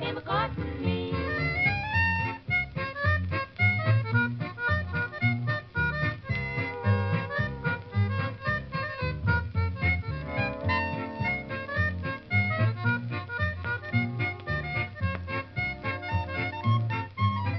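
Instrumental break from a 1944 shellac 78 recording of a 1940s country-pop song: the band plays a quick run of melody notes over a steady bass beat between the sung verses.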